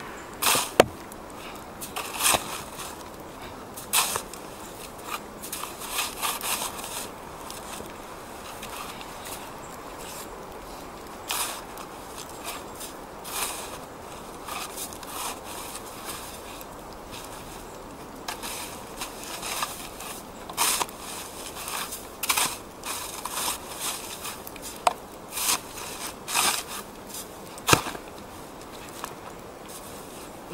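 Snow shovel digging into hard snow around a bicycle stuck in a drift: irregular crunching and scraping strokes with short pauses between them.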